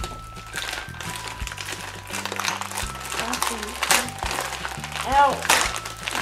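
Plastic Oreo cookie wrapper crinkling in irregular crackles as it is handled and peeled open, over background music. A short exclamation, "Oh!", comes near the end.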